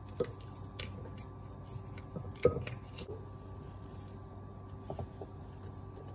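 Scattered small clicks and rustles of hands working the foil and wire cage off the neck of a champagne bottle and wrapping the bottle in a cloth towel. The sharpest click comes about two and a half seconds in, and a few more come near the end, over a faint steady hum.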